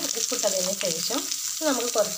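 Grated carrot frying in oil in a steel pan: a steady sizzle with small clicks. A voice talks over it throughout.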